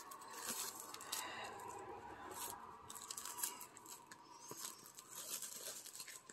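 Plastic wrap being torn open and peeled off a watercolor paper pad, a faint crinkling with many small crackles.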